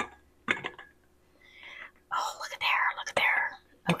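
Soft whispered muttering over a silicone spatula scraping tomato sauce through a stainless canning funnel into a glass jar, with a sharp tap about three seconds in.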